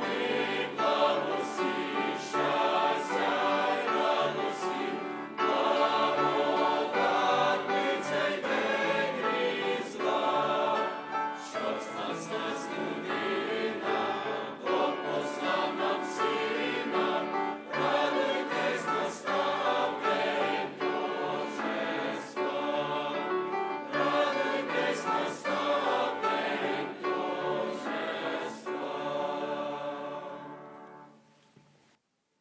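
Mixed youth choir of female and male voices singing a sacred song in parts, the last chord fading out at the very end.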